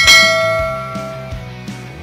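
A bell-like chime sound effect struck once, ringing with many overtones and fading away over about a second and a half.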